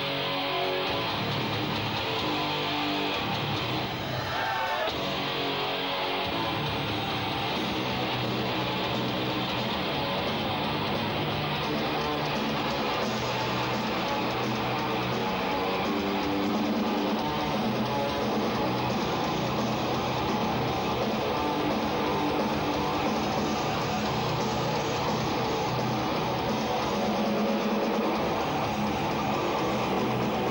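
Melodic death metal band playing live: electric guitars and bass in a continuous, steady-level song.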